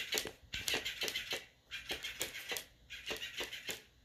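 Electric flipping fish toy flapping and slapping against a hardwood floor as a cat bats it: rapid, uneven clicking and tapping in bursts about a second long with short pauses between.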